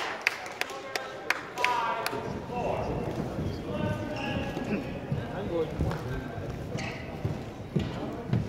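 Sports-hall sounds between badminton rallies: several sharp taps and a few squeaks of players' shoes on the court mat in the first two seconds, then a murmur of voices in the hall.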